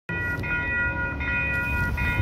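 Railroad crossing warning bell ringing: a high ringing tone that restarts with a short gap about every 0.8 seconds, over a low rumble.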